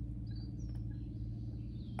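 Faint, distant bird chirps over a steady low background hum.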